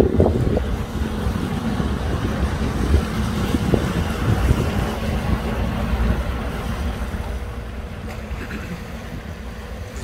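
Motor yacht's engines running as it cruises close past, with the wash of its bow wave, fading as it moves away in the last few seconds. Wind buffets the microphone.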